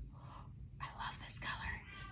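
A woman's soft, breathy whispering between spoken phrases, with no clear voiced words.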